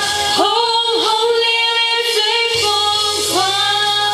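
A young woman singing a Mandarin pop ballad into a microphone over a backing track, holding one long note with vibrato for about two seconds before moving into the next phrase.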